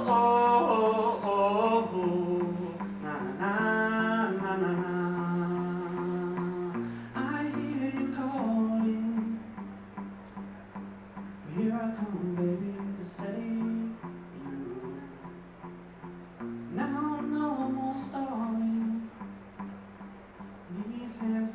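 A man sings to his own electric guitar in a live solo performance. Sung phrases come and go over steady, held guitar chords, with short guitar-only stretches between the lines.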